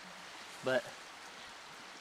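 A creek flowing steadily in the background, with one short spoken word under a second in.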